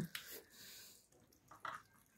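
Faint, wet squishing of hands rubbing a spice paste of salt, paprika, pepper and garlic into pieces of boiled pork fat in a metal tray, with one brief louder sound near the end.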